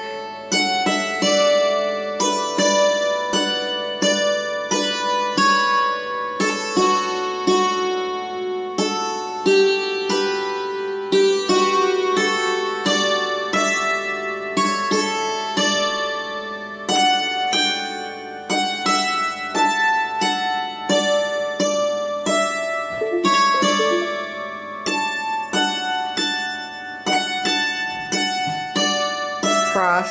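Hammered dulcimer played slowly with two hammers: a waltz in D, each struck note ringing on under the next.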